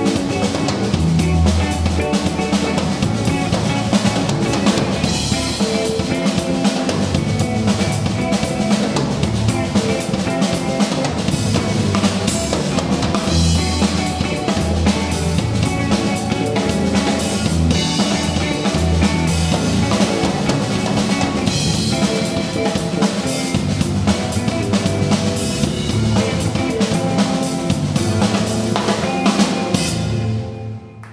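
Live instrumental band playing: a RotodruM drum kit with bass drum, snare and cymbals, driving a groove under electric guitar and electric bass. The music stops suddenly right at the end.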